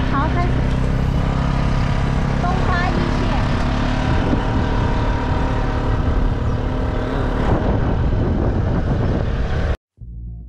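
A motor scooter running on the move: its engine drone is mixed with heavy wind noise on the microphone. The sound cuts off suddenly near the end.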